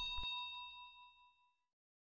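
A single bell-like ding, struck just before and ringing on with several clear high tones, fading away over about a second and a half.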